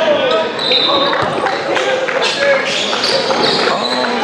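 Basketball bouncing on a gym floor amid voices and short high squeaks, in a large echoing hall.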